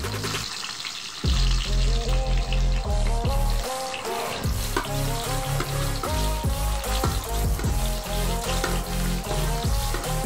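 Garlic sizzling as it fries in oil in a metal pan, with occasional stirring, under background music with a heavy beat that comes in about a second in and is the loudest sound.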